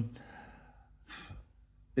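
A man's short breath about a second in, during a pause between his words. The tail of a drawn-out spoken "um" fades away at the start.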